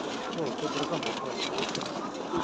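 Faint, indistinct voices of other people talking, over steady outdoor background noise.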